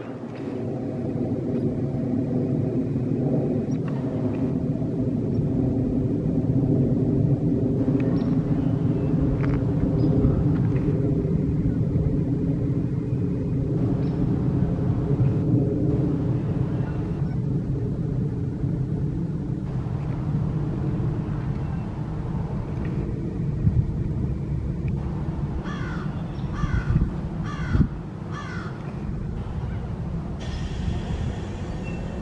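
A steady low rumble with a hum runs throughout. Near the end a crow caws five or six times in quick succession.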